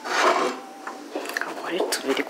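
Ceramic cup and saucer scraping on a cupboard shelf as they are lifted down, loudest in the first half second, followed by light clinks.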